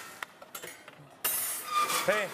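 Kitchen clatter: a sharp click, a few small ticks, then a short loud scraping rush with a brief metallic ring, like metal racks or trays being handled in a wall oven.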